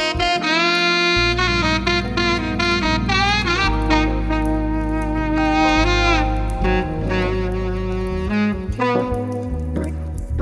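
Smooth jazz instrumental: a saxophone plays a melody with bends and slides over a steady bass line.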